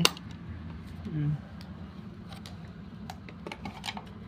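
Scattered small clicks and taps of hard plastic as a toy RC jeep's battery cover is pushed into place and the toy is handled.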